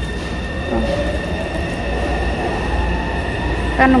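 Steady low rumble of an underground metro platform, with a thin steady high whine over it.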